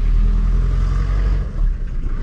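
Low, steady vehicle engine rumble heard from inside a car cabin, a little louder for the first second and a half.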